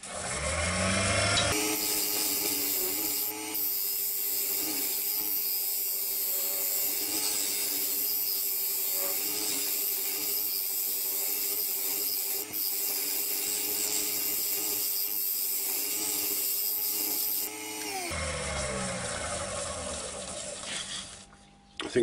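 Wood lathe spinning up, then a 12 mm round carbide-tipped scraper shearing the hard oak blank for about sixteen seconds, a steady hiss over the lathe's hum. The cut then stops and the lathe winds down.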